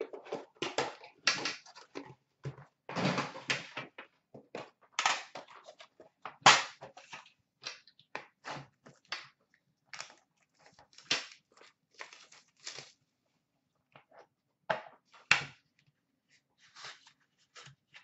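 Unboxing a hockey card box: the metal tin and the inner box are opened and handled, making a scatter of irregular clicks, knocks and rustles, the sharpest knock about six seconds in, with a short pause about three-quarters through.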